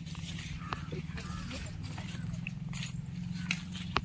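Faint footsteps on wet, muddy ground over a steady low hum, with one sharp click near the end.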